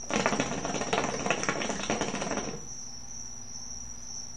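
Hookah water bubbling as smoke is drawn through the hose, a dense run of gurgling pops for about two and a half seconds that then stops.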